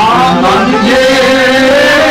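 Kashmiri folk song: a voice sings a wavering, ornamented line over a full instrumental accompaniment.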